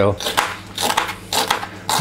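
Kitchen knife slicing through a fennel bulb onto a plastic cutting board: a handful of separate, irregular cutting knocks.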